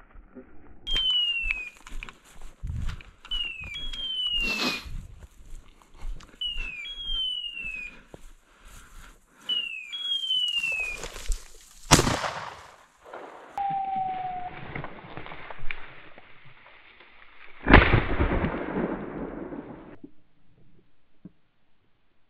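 Two shotgun shots about six seconds apart, the second followed by a long fading rumble. Before them, a high call falling in pitch repeats about every three seconds, a short note and then a longer one.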